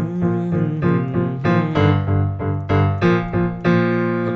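Digital stage piano playing low left-hand root-and-fifth power chords in the key of C minor, struck in a steady pulse of eighth notes at about four a second.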